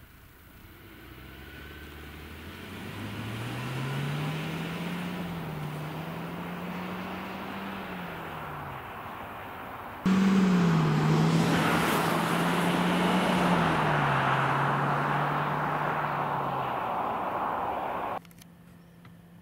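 Renault Austral's 1.3-litre four-cylinder petrol engine accelerating, its note rising over the first few seconds and easing back near the ten-second mark. After an abrupt cut it is heard louder with tyre and road noise, its engine note stepping down twice.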